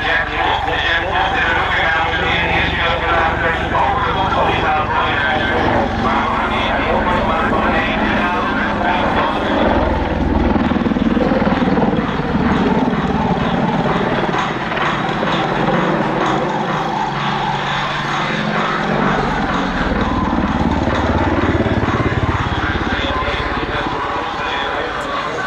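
AH-64D Apache attack helicopter flying a display, the steady sound of its rotor and twin turboshaft engines, whose pitch sways as it banks and turns.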